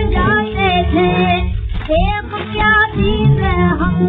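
A woman singing an ornamented, gliding Hindustani melody with accompaniment, from a 1931 Columbia 78 rpm shellac record. The sound is narrow and thin, with no treble above the upper midrange, as on an early gramophone recording.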